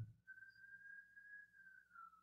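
Near silence, with a faint, thin high tone that holds for about two seconds, drifting slightly in pitch before it fades.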